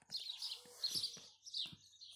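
Birds chirping in short, high notes, with a few soft clicks among them.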